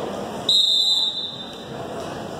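Referee's whistle blown once, a short high blast of about half a second, signalling the start of the wrestling bout, over the murmur of the gym crowd.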